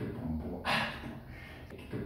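A man drawing one short, sharp breath in through the nose about two-thirds of a second in.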